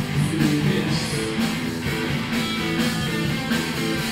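Rock band playing an instrumental passage live, with strummed acoustic guitar, electric guitar, bass guitar and drums in a steady rhythm.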